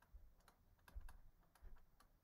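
Faint, light clicks of a stylus tapping on a drawing tablet as an equation is handwritten, a few irregular ticks over soft low bumps.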